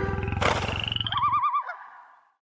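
Animalist channel sound logo: a low, rapidly pulsing animal-like growl, joined just under a second in by a quickly wavering, warbling high tone that fades out near the end.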